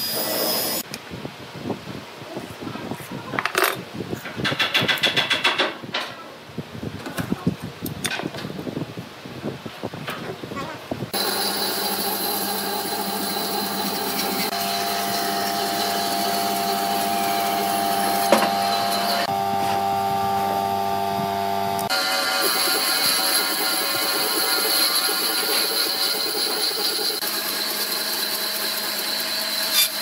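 Irregular knocks and scrapes of a heavy wooden log being shifted on a workbench. About eleven seconds in, a bandsaw starts running steadily as it cuts the log, its sound changing abruptly twice.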